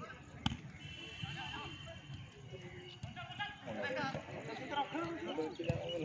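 Voices of players and spectators calling out and chattering at an outdoor football match, with a sharp thud of the football being struck about half a second in and another near the end.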